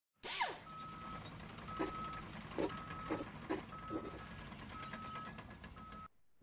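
An electronic beep repeating about once a second, each beep about half a second long, over a low steady hum with a few soft clicks. A short falling sweep, the loudest sound, opens it.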